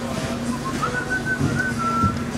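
A person whistling a short tune over a steady background hum. A few short notes lead into an upward glide about a second in, then held notes that settle slightly lower.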